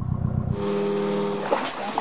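A fishing boat's engine running steadily. It starts as a deep hum, then about half a second in it changes abruptly to a steadier, higher-pitched drone.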